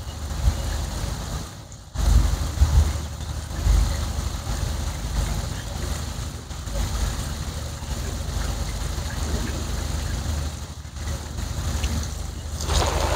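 Water spraying from a hose and splashing onto the housings of a wall-mounted FoxESS solar inverter and battery stack and the wall behind them, a steady hiss with a low rumble underneath. The sound breaks off briefly about two seconds in, then carries on.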